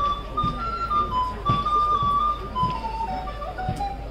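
A simple tune played on a high pipe or whistle, its notes stepping up and then falling away near the end, with soft low thuds about once a second beneath it.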